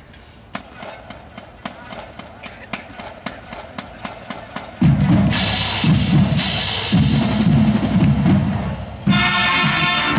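Marching band practice: a steady ticking beat, about three ticks a second, keeps time, then the brass section comes in loud about five seconds in, breaking off briefly twice, and the full band plays on from about nine seconds.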